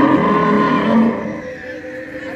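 Recorded dinosaur call played from an animatronic stegosaurus's sound system: a long, low, moo-like call that fades out about a second in.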